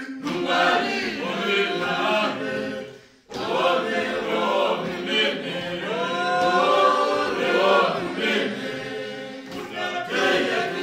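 A group of voices singing together unaccompanied, a congregational a cappella hymn, broken by a brief gap about three seconds in.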